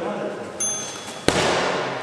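Background chatter in a large, echoing sports hall; a short high ding about half a second in, then a single sharp thud just past the middle that rings on in the hall's reverberation.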